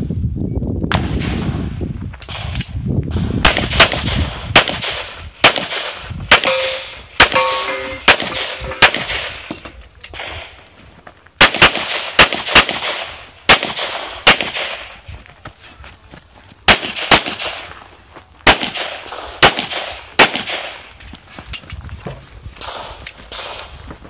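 Pistol shots fired during a practical shooting stage: many sharp reports, often in quick pairs, with a short break around ten seconds in. About seven seconds in, some shots are followed by a brief metallic ring.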